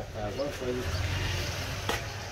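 Utility knife scraping as it cuts a vinyl sticker on a metal power-supply casing, with faint voices in the background and a sharp click near the end.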